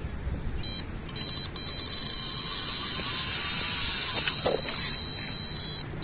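Electronic carp bite alarm sounding a run: a few short high beeps about half a second in, then one continuous high tone as a fish pulls line off the rod, cutting off near the end.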